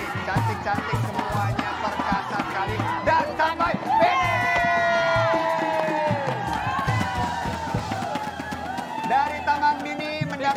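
Background music with a steady beat under a crowd cheering and shouting, with many sharp claps throughout.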